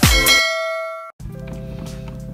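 A bell-like ding sound effect struck once, ringing and fading for about a second before it cuts off abruptly. Soft background music with a steady low hum then begins.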